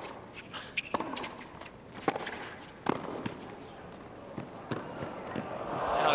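Tennis rally on a hard court: several sharp racquet-on-ball strikes and bounces about a second apart. Crowd noise swells near the end as the point finishes.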